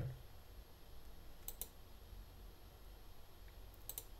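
Computer mouse clicking: two quick clicks about a second and a half in and another click or two near the end, faint over low room hum.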